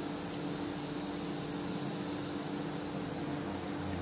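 Hot oil in a steel kadai sizzling steadily as balls of eggless maida cake dough deep-fry, with a steady low hum underneath.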